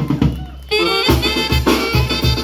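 A live tamborazo band playing: trumpets and saxophones over the regular heavy beat of the tambora bass drum. The sound thins out briefly about half a second in, then the full band comes in loudly.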